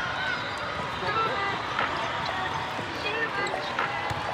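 Live indoor volleyball match in a large echoing hall: a steady murmur of players' and spectators' voices, sneakers squeaking on the court, and two sharp hits of the ball, one about halfway through and one near the end.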